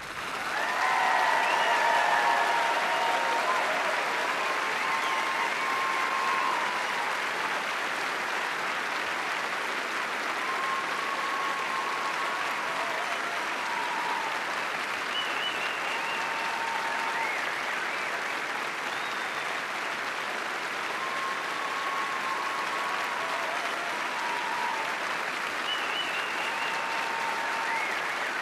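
Large audience applauding as an orchestral piece ends. The clapping builds over the first two seconds and then holds steady, with scattered cheers rising above it.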